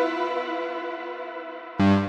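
Prophanity software synthesizer, an emulation of the Sequential Circuits Prophet-5, playing a polyphonic patch: a chord rings out and fades in a long delay-and-reverb tail, then a new, louder chord with a deep bass note strikes near the end.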